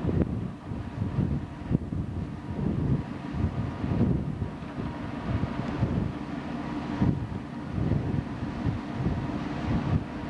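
Wind buffeting the microphone aboard a moving passenger ship, over the steady hum of the ship's engine.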